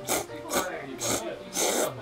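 A man slurping ramen noodles from a bowl: four quick slurps, the last the longest.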